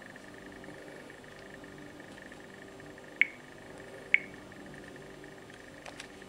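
Two short, sharp clicks about a second apart, each with a brief high ring, from a Samsung smartphone being handled and tapped, over a faint steady hum.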